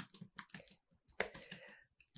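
Faint typing on a computer keyboard: a run of quick, irregular keystroke clicks.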